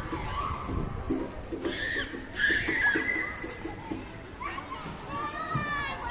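Children's voices at play, with a long high-pitched child's call about five seconds in.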